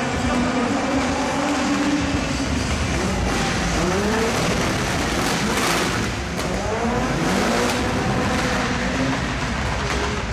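2000cc-class racing car engines revving hard in a demo run. The engine pitch holds high, then drops and climbs again several times, with tyre noise as the cars slide.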